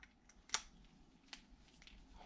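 Handling of a microphone cable's metal XLR connector at a handheld microphone: a sharp click about half a second in, a smaller click just past a second in, and a few faint ticks.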